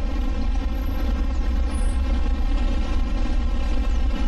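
A steady, loud, engine-like rumbling drone with a buzzy hum layered over it, unchanging throughout.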